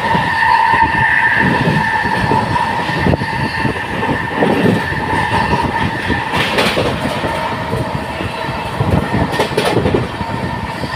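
Express passenger train running at speed, heard from an open coach door: steady rumble and wheel clatter over the rails, with a couple of sharper clacks in the second half. A steady high tone rings over the noise for the first few seconds, then fades.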